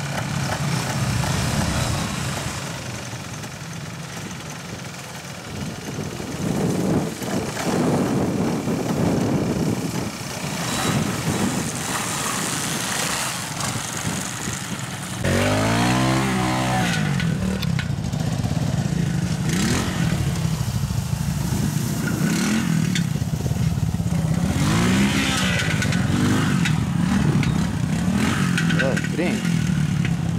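Trials motorcycle engines running and revving in short bursts as riders pick their way through a section. About halfway through, one bike becomes louder and closer, its engine revving up and down several times on a climb.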